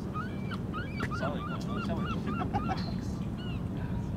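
A flock of birds calling in a rapid series of short honking calls, about four a second, with a steady low rumble underneath.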